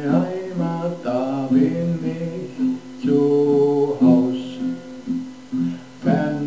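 A man singing a slow song in long, held notes to his own strummed acoustic guitar.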